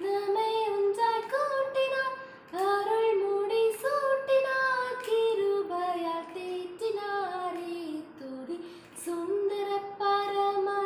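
A young woman singing a Tamil Christian song solo, without accompaniment, in long held melodic phrases, with short breaths about two and a half and nine seconds in.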